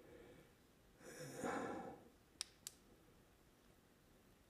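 A soft breathy exhale, then two sharp plastic clicks about a quarter second apart from the folded DJI Osmo Mobile 3 gimbal being handled as he tries to unlock it.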